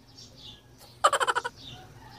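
Small birds chirping in the background with short, falling notes. About a second in, a loud, rapid rattling call lasts about half a second.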